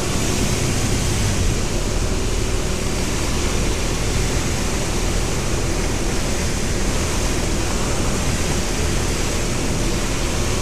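Microlight aircraft's engine and propeller running steadily in flight, under a heavy, even rush of air noise.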